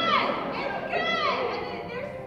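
High voices calling out twice, about a second apart, each call gliding up and then down in pitch.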